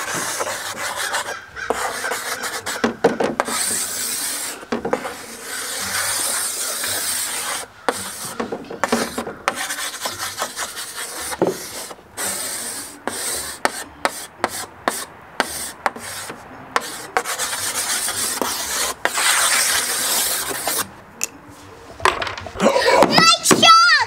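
Stick of chalk scraping across a blackboard in drawing strokes: a scratchy rasp broken by many short pauses between strokes.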